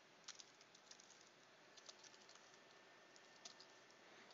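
Faint, irregular clicking of computer keyboard keys, a quick cluster about a third of a second in and a few more clicks around two seconds and near three and a half seconds, over quiet room tone.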